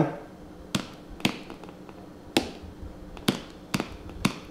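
A jar of powdered peanut butter tipped over a bowl to shake the powder out, giving five sharp, unevenly spaced taps over four seconds.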